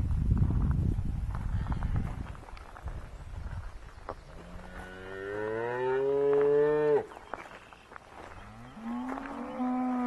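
Cattle mooing: one long, rising moo of about three seconds starting about four seconds in, then a second moo beginning near the end. A low rumbling noise fills the first two seconds.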